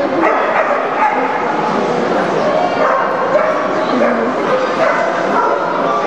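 Many dogs barking and yipping at once over a babble of people's voices, filling a large exhibition hall.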